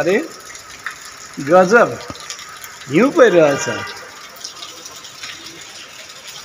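A man's voice making two short, drawn-out wordless calls, each sweeping up and then down in pitch, about a second and a half apart, over a low steady background hiss.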